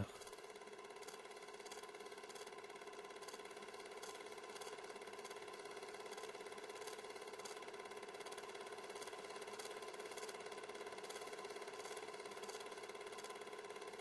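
Film projector running: a faint, steady motor hum with a light, regular mechanical clatter.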